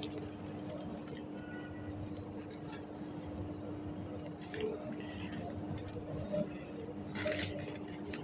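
A few faint, short clicks from the push buttons on the front panel of a Schneider EOCR 3DM2 motor protection relay being pressed, over a steady low hum.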